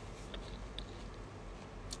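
Quiet background room noise with a low hum and a few faint small clicks during a pause in speech.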